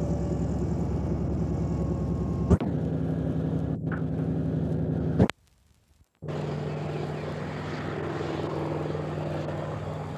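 Helicopter engine and rotor running steadily, broken by two sharp clicks a few seconds apart and a dropout of about a second around the middle, after which a steady hum goes on.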